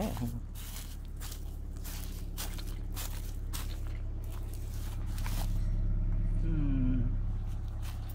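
1993 Nissan Altima's engine idling with a steady low hum, getting quiet, swelling a little louder about five seconds in. Footsteps crunch on dry leaves in the first half.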